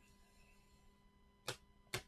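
Near silence with two short sharp clicks about half a second apart, near the end, from a clear plastic card holder being picked up and handled.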